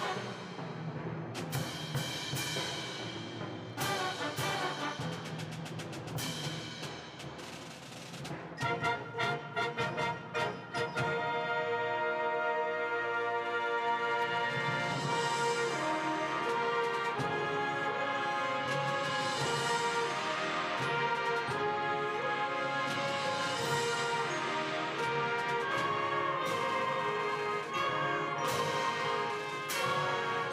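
A wind symphony playing: timpani strikes over brass and woodwinds, quickening into a run of rapid strokes about nine seconds in, then the full band holding loud sustained chords that swell and fall.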